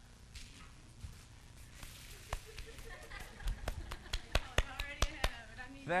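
A run of about a dozen sharp taps or clicks on a hard surface, starting a couple of seconds in and coming faster toward the end, over faint murmuring in the room.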